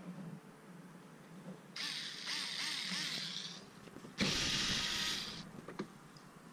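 Cordless drill-driver running in two short bursts, backing out the screws that hold the front wheel-arch liner. The first burst starts about two seconds in and lasts about two seconds; the second, louder one starts about four seconds in.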